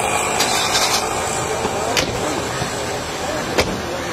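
A car door slamming shut with one sharp bang about three and a half seconds in, over steady outdoor background noise; a lighter knock comes about two seconds in.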